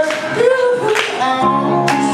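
Live song: a male singer sings a held, gliding melody over electronic keyboard chords, with percussive hits about once a second marking the beat.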